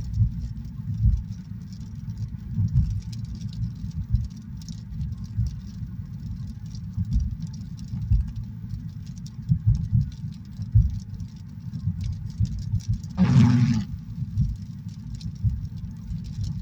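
Road noise heard from inside a moving car: a steady low rumble of tyres and engine with uneven bumps, and faint light ticking above it. A brief louder noise comes about 13 seconds in.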